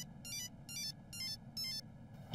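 Mobile phone ringtone: a quiet electronic melody of quick, high, stepped notes, repeating in short runs about every 0.4 s.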